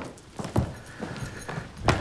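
Footsteps on a hard tiled floor: a few separate, sharp knocks, the loudest near the end.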